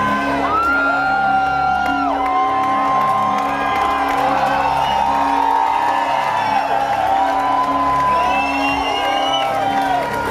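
Loud rock-concert music with a steady low drone, under a crowd cheering and whooping, with long held high yells that rise and fall in pitch.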